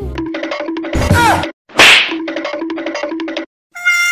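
Comedy sound effects over a bouncy repeating music loop. About a second in comes a falling, whistle-like glide with a thump, and about two seconds in a short, sharp hit. The music stops briefly before a new tune starts near the end.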